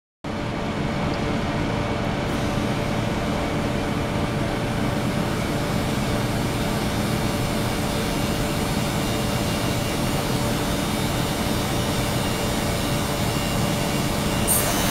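Ultrasonic cleaning tank running, its immersed transducers driving cavitation in the water: a steady hissing noise with faint steady tones underneath, growing slightly brighter about two seconds in.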